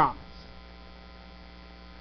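Steady electrical mains hum: a low, even buzz made of a row of faint steady tones, with nothing else over it once the last spoken syllable fades in the first moment.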